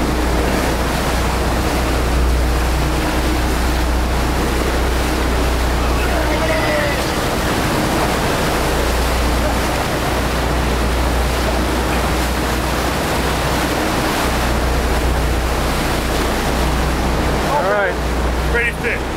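Water rushing and splashing along the hull of a moving boat, a steady noise over a low rumble, with wind on the microphone.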